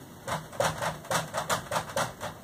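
Dry-erase marker writing on a whiteboard: a run of short, quick strokes, roughly four a second.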